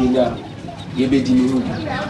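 A man speaking, with a bird's low cooing call over his voice in the second half.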